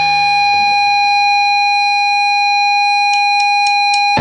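Electric guitar feedback holding one steady high-pitched tone over a faint low hum. Near the end a quick run of sharp clicks counts in the band.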